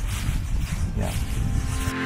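Wind buffeting the microphone outdoors, a fluctuating low rumble, with a single spoken "yeah" about a second in.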